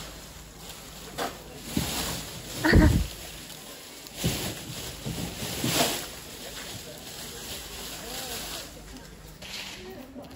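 Indistinct voices in the background, broken by a few sudden louder sounds; the loudest comes about three seconds in.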